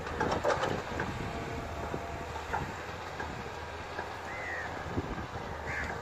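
Tracked excavator's diesel engine running steadily, with irregular metallic clanks and knocks as the machine works, busiest in the first second.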